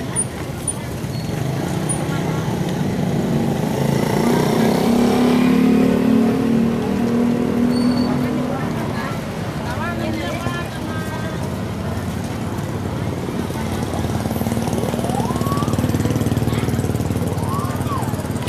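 Small motorcycle engines running and passing close by on a busy street, swelling louder about four seconds in and again near the end, with people talking around them.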